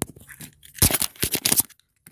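Handling noise: fingers rubbing and scraping close to the phone's microphone, in a short flurry of scrapes and clicks about a second in.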